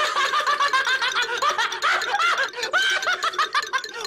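A man laughing: a fast, steady run of short pitched bursts, about five a second.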